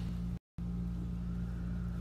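Steady low mechanical hum, broken by a brief cut to silence about half a second in.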